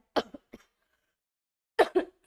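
A woman clearing her throat with short coughs: one burst just after the start, a small one half a second later, and a louder one near the end.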